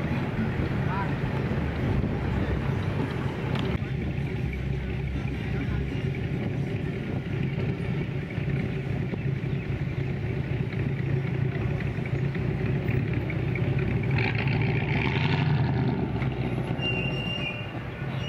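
Engine and exhaust of a 1950s American convertible running with a steady low rumble, a racket, as the car drives past and away; it swells a little near the end.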